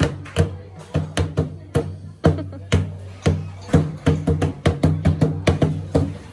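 A child beating a round wooden log drum with a flat stick: a run of hard strikes, about two a second and quickening after the middle, each with a short low ring.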